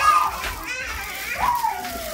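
Young children's high voices calling out while playing, with one falling, drawn-out call midway.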